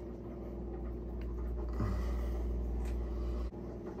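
A steady low hum fills a small room. About two seconds in, a man makes a short, faint closed-mouth 'mm' that falls in pitch, and there are a couple of faint clicks.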